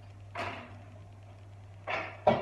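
Kitchen scissors snipping the tip off a plastic piping bag of purée: two short, crisp sounds, one about half a second in and one near the end, over a low steady hum.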